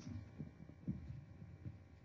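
A few faint, soft low thuds of hands handling things at a lectern, picked up by the lectern microphone, over a low steady room hum.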